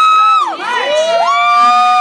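Audience cheering at the end of a song, with loud, high-pitched held whoops: one falls away about half a second in, and overlapping whoops take over from about a second in.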